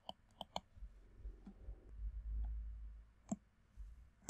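Computer mouse clicks: three quick sharp clicks right at the start and one more about three seconds in, over a faint low rumble.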